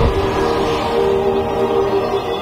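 Trailer soundtrack: sustained orchestral music chords, with a short low boom right at the start.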